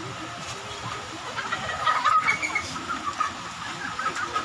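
A chicken clucking, in a quick run of short calls from about a second and a half in to about three seconds.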